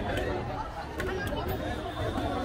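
Several people talking at once in the background, with a few sharp clicks about a second in.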